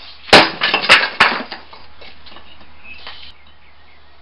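A bare-hand strike on a wooden board laid over stacked concrete patio-slab pieces gives a sharp crack as the concrete breaks. Two more hard knocks and a clatter follow within the next second as the broken pieces fall, then faint rattling until about three seconds in.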